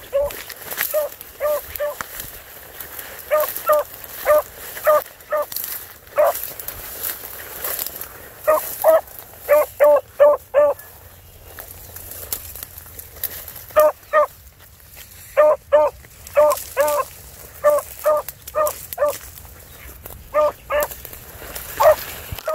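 A hound barking in quick runs of short, high barks, several to a run, with short pauses between runs. Dry brush crackles faintly throughout.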